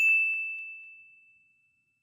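A single high chime, a logo sound, rings out on one steady note and fades away over about a second and a half.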